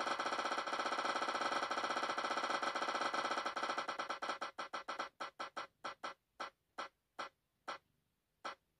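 An online spinner wheel's electronic tick sound effect: a rapid run of short pitched ticks that gradually slows as the wheel decelerates, ending in single ticks about half a second apart as it comes to rest.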